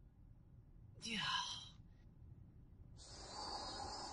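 A man's breathy, falling 'yeah' about a second in. From about three seconds in, a steady high chirring of insects begins.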